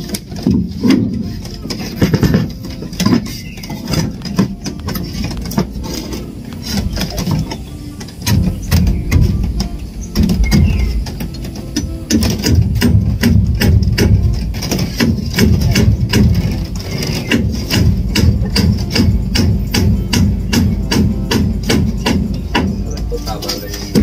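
Background music with a beat, mixed with a hammer knocking on timber; the knocks come thick and fast in the second half.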